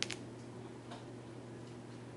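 Quiet room tone in a lecture room: a steady low hum, with one sharp click just at the start and a few faint ticks after it.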